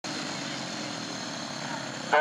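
Several speedway motorcycles' single-cylinder engines running steadily at low revs as the bikes roll up to the start line.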